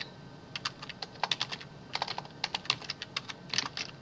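Typing on a computer keyboard: irregular keystrokes coming in short quick runs.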